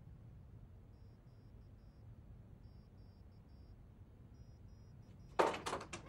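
Quiet room tone with three faint runs of short high pips, then, in the last half second, a sudden loud clatter of several sharp knocks.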